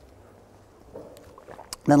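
Quiet room tone with a faint murmur about a second in and a few small clicks, then a man starts speaking near the end.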